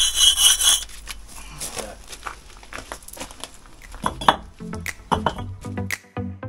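Old mortar being scraped and chipped off a reclaimed brick with a hand tool. The scraping is loudest in the first second, then comes in lighter scrapes and taps. Electronic music with a steady beat comes in about four and a half seconds in.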